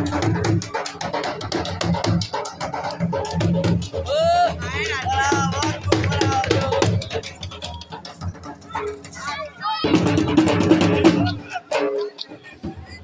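Dhol drumming for a jhumar dance, a dense run of strokes with voices and shouts over it; the drumming thins out about eight seconds in and comes back loud near ten seconds.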